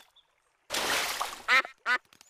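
A cartoon duck quacking twice near the end, each quack short and pitched, after a brief rushing noise.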